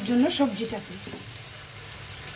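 Long beans and tomato in a spice masala sizzling in oil in a nonstick frying pan as a spatula stirs them. The masala has cooked down until the oil separates at the edges.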